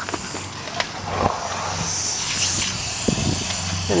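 A hiss, strongest for about half a second some two seconds in, over a steady low hum, with scraping and handling noise under the vehicle.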